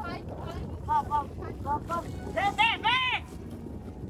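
Several short, high-pitched voice calls from people on the trail, the loudest ones near the end, over a steady rumble of wind on the microphone.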